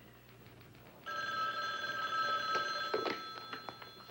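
An old desk telephone's bell ringing about a second in for roughly two seconds, then clicks and clatter as the handset is picked up to answer.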